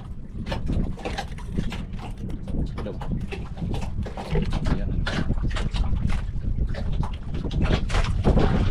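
Wind rumbling on the microphone, with water slapping against the hull of a wooden outrigger fishing boat in short, irregular splashes.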